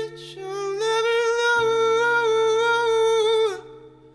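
A man's wordless falsetto vocal holding one long note over sustained guitar chords, with a short intake of breath at the start; the note and chords fall away near the end.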